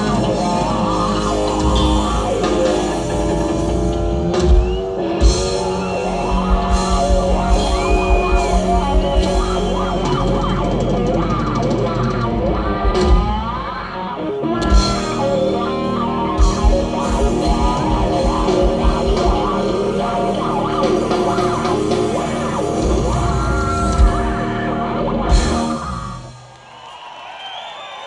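Live rock band playing an instrumental passage: an electric guitar lead with bending notes over drums and bass. The band stops near the end and the sound drops away.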